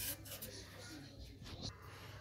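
Faint rustling and a few light knocks from a phone being handled and moved, over quiet small-room tone.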